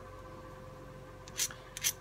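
Hand tools handled on a desk: four quick, short clicks about one and a half seconds in, over a faint steady hum.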